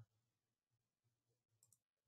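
Near silence: a faint low hum of room tone, with a couple of very faint clicks near the end.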